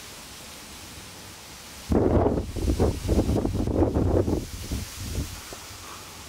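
Steady outdoor hiss, then about two seconds in a loud rumbling, crackling noise on the microphone that lasts about two and a half seconds and dies away in a few smaller bursts.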